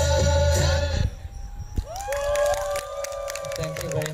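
Nepali folk dance music stops abruptly about a second in, ending the dance. After a short pause the audience cheers with long rising whoops and scattered clapping.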